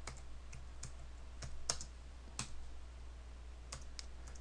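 Computer keyboard typing: faint, irregular keystrokes as a short line of code is entered, over a steady low hum.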